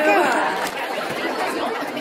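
A brief "thank you" at the start, then indistinct chatter of several people talking in the background.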